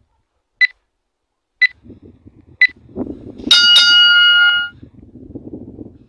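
Workout interval timer: three short electronic beeps a second apart counting down, then a bell tone rung twice in quick succession that rings on for about a second, marking the start of a training round.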